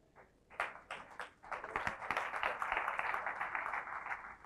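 Audience applauding: a few scattered claps about half a second in, building into steady applause from many hands.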